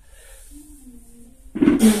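A man's breathing and voice under a 75 kg deadlift: a low, slightly falling hum through the middle, then a loud forceful exhale with a grunted "mm" about one and a half seconds in as he lowers the barbell.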